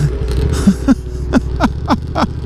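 A man's short breathy laughs, about six of them falling quickly in pitch, over the steady low drone of the Ducati motorcycle he is riding.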